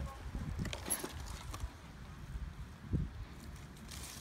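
Low-level rustling and handling noise as a hand reaches into strawberry plants to pick berries, with a few soft clicks about a second in and near three seconds.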